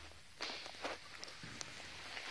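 Footsteps: a short quiet gap, then a few steps in a row, a little under half a second apart, starting about half a second in.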